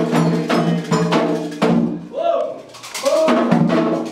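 Candomblé ceremonial music: hand drums beaten in a fast rhythm with a struck metal bell, under singing voices. The drumming breaks off about halfway, where a lone voice is heard, and starts again near the end.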